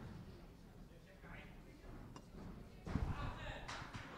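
Quiet boxing-hall ambience with scattered crowd voices, and a few thuds about three seconds in as the boxers trade punches and shuffle on the ring canvas.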